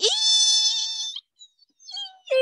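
A person's voice imitating a squealing microphone noise: a high, steady, squeal-like tone that slides up at the start, holds for about a second and then stops.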